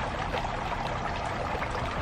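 Hands crumbling and pulling loose potting soil mixed with perlite from a plant's root ball: a steady gritty rustle with small crackles.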